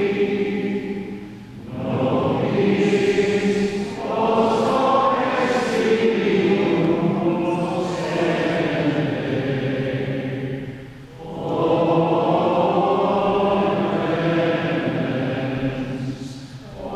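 A group of voices chanting a sung liturgical text in long sustained phrases, with short breaks for breath about a second and a half in and again about eleven seconds in.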